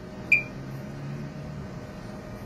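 A pause in a man's talk: quiet room tone with one short click about a third of a second in and a faint low hum after it.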